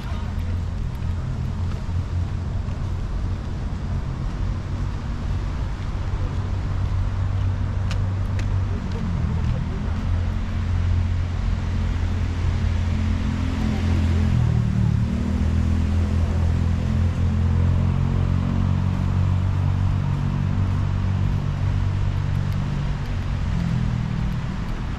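Steady low rumble of road traffic, swelling somewhat in the middle and easing toward the end.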